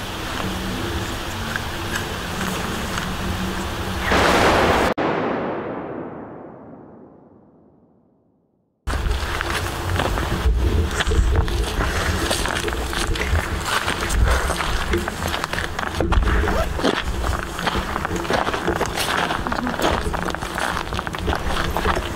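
Steady background with a loud burst of noise about four seconds in, which fades away to silence. About nine seconds in, sound cuts back in suddenly: a low rumble on the microphone and irregular footsteps on cobblestones.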